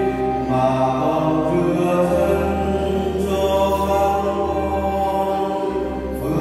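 Church music: a slow hymn in long held notes over sustained low accompaniment, the notes changing every second or two.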